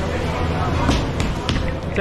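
Hands slapping and patting roti dough flat on a counter: a few quick soft slaps about a third of a second apart, over a steady low kitchen hum.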